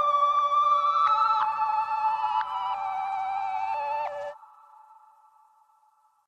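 Short electronic outro jingle of held synthesizer tones that step from one chord to the next. It cuts off about four seconds in, leaving a faint lingering tone that fades out.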